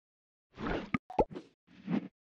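Short logo sting sound effect: a brief rush of noise, two sharp pops with a quick falling blip, then a second short rush, all within about a second and a half.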